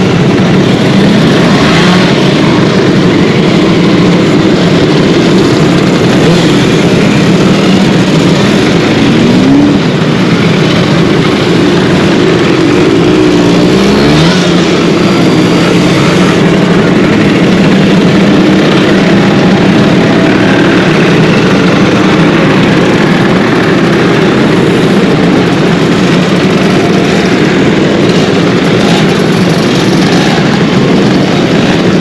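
A crowd of two-stroke scooter engines, vintage Vespa-style scooters in a slow column, running as they ride past in a loud, steady blend of exhausts. A couple of engines rev up, about a third of the way in and again near the middle.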